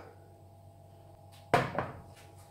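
Faint steady room hum, then a single short clunk about one and a half seconds in that dies away quickly.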